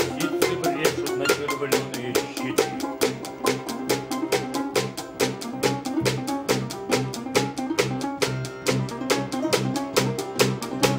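Russian folk instrumental ensemble playing a lively tune: domras and balalaika picked over button accordion, bass and drum kit, with a steady, driving beat.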